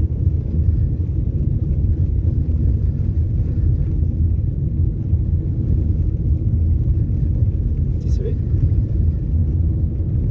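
Car cabin road noise while driving: a steady low rumble of engine and tyres on the road, heard from inside the car.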